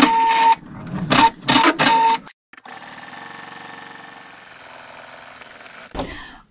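Viking embroidery machine stitching: a fast, loud needle clatter with a steady whine for about two seconds, then, after a short break, quieter steady, even stitching.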